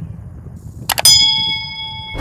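Subscribe-animation sound effect: two quick mouse clicks about a second in, then a single notification-bell ding that rings on and fades over about a second.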